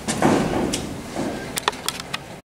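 Plastic sink waste and elbow fitting being handled and lifted: a short rustle, then a few sharp plastic clicks and taps, several close together near the end.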